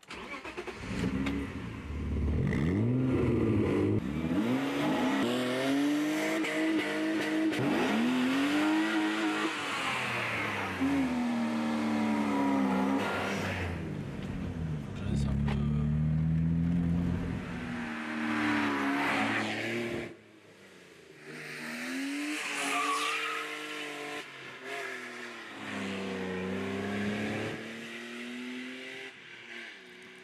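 1984 BMW E30's engine revving and accelerating through the gears, its pitch climbing and dropping back at each shift in repeated pulls, with a brief quieter stretch about two-thirds of the way through before it pulls again.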